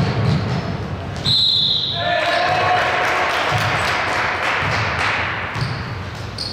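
Basketball game sounds in a large gym: a ball bouncing and feet thudding on the hardwood floor, with a short shrill tone about a second in and players' voices echoing in the hall.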